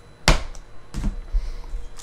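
Gloved hands handling foil trading card packs on a tabletop: two sharp knocks about three-quarters of a second apart, with low rustling and handling noise after the second.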